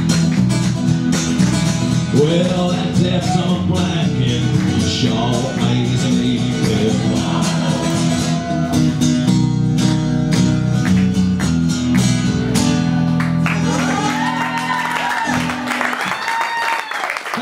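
Steel-string acoustic guitar strummed steadily in an instrumental passage of a live song. The strumming stops about a second before the end, as higher rising and falling calls from the audience begin.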